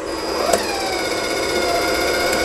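Wire-feed drive motor of a YesWelder Flux 135 flux-core welder. A click comes about half a second in, then a steady whine as the drive rolls push wire out of the gun tip into a wooden bench. This is a test of drive-roll tension by watching how the wire curls.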